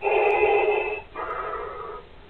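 Darth Vader-style respirator breathing from a costume voice-changer: one full breath, a louder hissing half lasting about a second, then a quieter half, with a short pause near the end.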